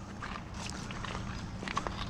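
Footsteps on a dry, rocky and weedy riverbed, with a few light clicks of stone against stone.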